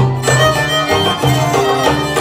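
Live Arabic band music for belly dance: a violin carries the melody over a steady darbuka rhythm, with contrabass, oud and accordion filling in.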